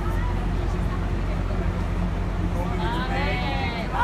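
Indistinct voice over a steady low hum, with a clearer stretch of talking near the end.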